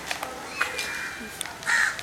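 A crow cawing once near the end, a single short harsh call.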